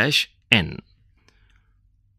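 A narrator's voice speaks two short syllables in the first second, then pauses.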